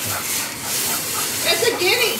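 Noisy outdoor phone-video recording played back: a steady hiss of background noise, with a faint, wavering call near the end that a listener takes for a guinea fowl.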